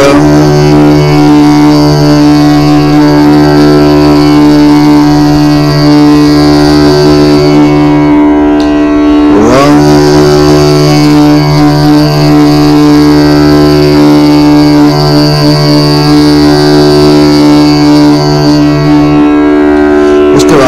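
Tanpura drone in the D scale, held steady, with a man chanting a bija mantra syllable over it as a deep hummed tone. The chant comes as two long held notes of about eight seconds each, with a short breath between them.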